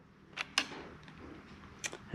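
Two light clicks about a second and a half apart, from a hand handling the fuel rail fittings and wiring on an engine that is not running, over faint room noise.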